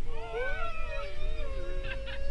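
Several voices howling together on a bus, their pitches gliding up and down and crossing one another, drifting down toward one held note near the end.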